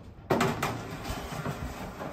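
A stainless steel cooking grate being slid into the upper rack rails of a pellet grill: a metal clank about a third of a second in, then rattling and sliding of the grate on its rails.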